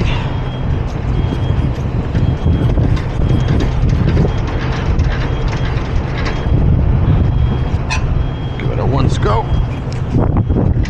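Semi-trailer landing gear being hand-cranked in high gear: the crank handle and gearbox click and rattle in an uneven run. Behind it the truck's engine idles with a steady low rumble.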